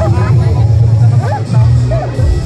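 Crowd of onlookers chattering, several voices overlapping, over a loud, steady deep hum.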